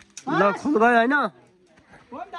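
A man's voice calling out two drawn-out syllables, just after a brief click.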